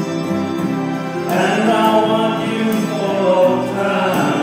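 Music: a man singing into a microphone over a sustained backing accompaniment, his voice coming in strongly about a second in.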